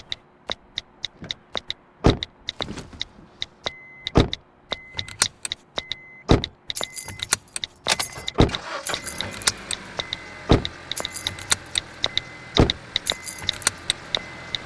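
Sharp tap clicks of a phone's on-screen keyboard, with a car's warning chime beeping about once a second from around four seconds in and car keys jangling at the ignition. A deep thump lands about every two seconds.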